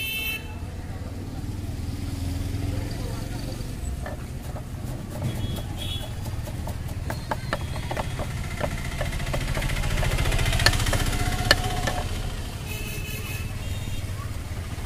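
Knife chopping fresh coriander on a wooden board: a run of quick taps through the middle, with two sharper knocks a little before the end, over a steady hum of passing road traffic.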